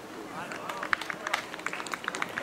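Players' voices calling out on an open-air football pitch, with a run of short, sharp clicks in the second half.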